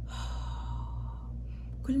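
A woman's long audible exhale, a sigh lasting about a second and a half, over a steady low hum; she starts speaking again near the end.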